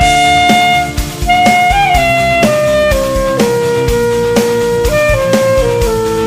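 Saxophone playing a slow melody of long, held notes over a backing track with drums, with a short break between phrases about a second in.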